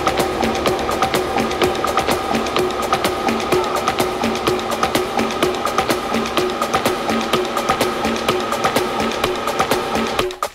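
Percussion-led tribal tech house music playing from a DJ set, with a dense, even beat of clicky hand-percussion hits over a repeating melodic figure and little bass.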